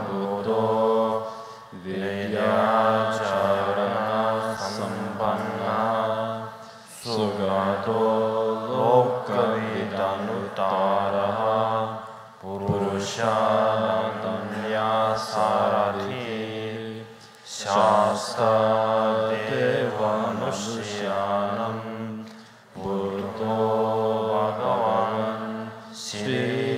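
A large assembly of monastics and lay practitioners chanting a Buddhist liturgy of homage to the Buddha in unison, in a steady melodic recitation. The chant moves in phrases of about five seconds, each broken by a short pause for breath.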